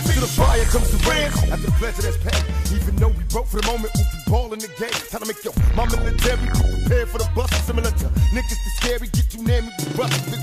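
Hip hop track: rapped vocals over a heavy bass line and drum beat, the bass dropping out briefly about halfway through.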